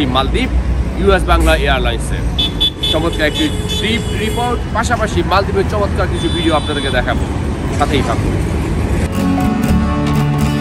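Speech over road traffic noise, a steady low rumble with a vehicle horn sounding about three seconds in. Near the end, soft guitar music comes in.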